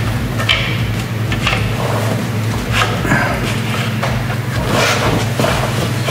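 Clutch pressure plate handled against the flywheel while its bolt holes are lined up, giving scattered light clicks and knocks of metal on metal, over a steady low hum.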